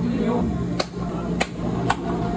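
Plastic dome lids pressed onto plastic drink cups: three sharp clicks about half a second apart, over a steady low hum of café equipment.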